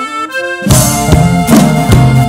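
An accordion plays a short run of single notes as a lead-in, then the full band comes in about two-thirds of a second in with drums on a steady beat, opening the song.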